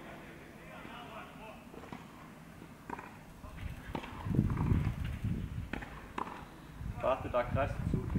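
A few light clicks of the steel hex trap bar as it is gripped from a squat, then a low rumble for about two seconds, and a few spoken words near the end.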